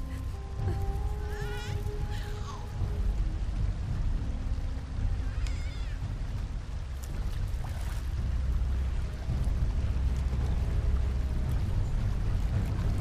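Background film score with held notes over a deep, steady low end, with a few short warbling calls about a second and a half, two seconds and five and a half seconds in.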